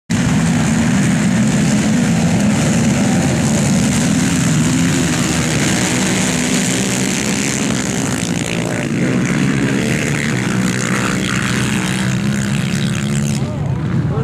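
Pack of ATV racing engines revving hard together as the quads launch from the start line and accelerate away across the ice, a dense steady engine drone.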